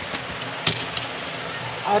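Steady hiss of oil heating in a kadhai on a gas burner, with a couple of sharp clicks about two-thirds of a second in.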